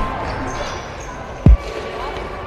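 A basketball bouncing once on a hardwood gym floor: a single loud, deep thud about one and a half seconds in, over quieter sound of the hall.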